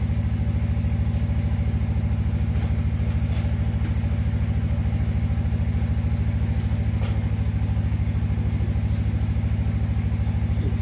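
An engine running steadily at a constant speed: a low, even hum with a fast pulse, unchanged throughout, with a few faint clicks over it.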